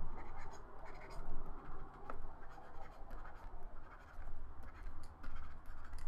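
Stylus scratching across a drawing tablet in short, irregular strokes with small ticks, brushing in and blending highlights in a digital painting.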